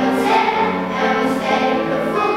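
A children's choir singing in many voices, accompanied by a grand piano, with held notes changing about every half second.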